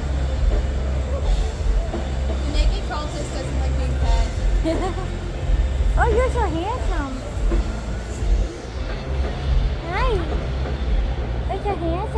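Fairground midway noise: a steady low rumble under background crowd voices and music, with warbling tones that rise and fall, first about six seconds in and again near the end.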